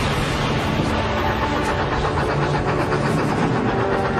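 Steam locomotive running: a steady, dense mechanical noise, with background music held underneath.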